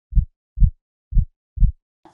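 Heartbeat sound effect: two low double beats, lub-dub, about a second apart.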